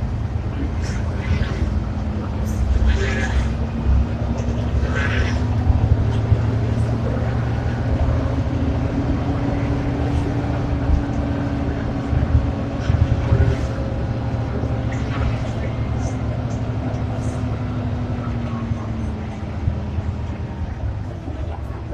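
Ikarus 435 articulated city bus heard from inside the passenger cabin while driving: a steady low diesel drone whose pitch rises a little mid-way and falls again near the end as the bus speeds up and slows, with scattered short rattles over it.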